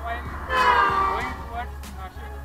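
A vehicle horn sounds once on the highway, lasting a little under a second and starting about half a second in, over a fainter voice or background music.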